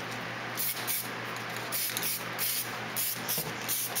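Aerosol can of high-build grey primer spraying in short hissing bursts, about six in four seconds, over a steady low hum.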